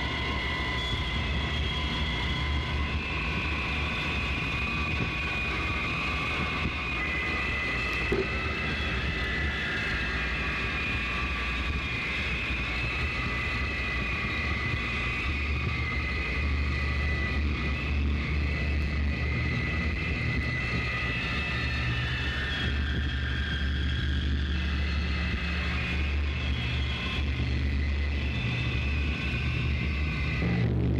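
Noise-drone music: a dense low rumble under several sustained high tones that slowly drift in pitch, with a single brief click about eight seconds in.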